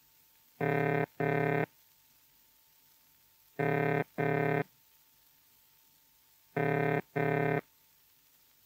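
Early British Post Office telephone ringing tone played from a 78 rpm record: three pairs of low-pitched burring sounds, each pair followed by a long pause, repeating about every three seconds. It is the signal that the dialled number is being rung.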